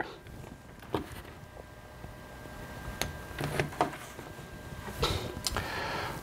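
Quiet handling noise with a few small clicks, the sharpest about three seconds in, as a micro-USB power cable is plugged into a Raspberry Pi Zero W board.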